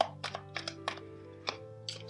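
Soft background music of held notes, with a string of light, irregular clicks from a deck of tarot cards being shuffled and handled. The sharpest click comes right at the start.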